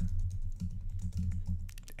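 Computer keyboard being typed on, with a quick run of keystrokes near the end over a steady low hum.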